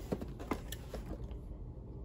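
Handling noise of a cardboard plastic-model kit box being turned over in the hands: a few light taps and rubs in the first second, then quieter.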